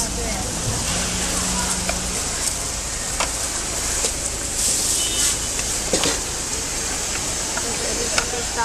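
Busy street ambience: a steady wash of traffic and passers-by with faint voices, a brief low hum about a second in, and a few light clicks of utensils at the noodle cart.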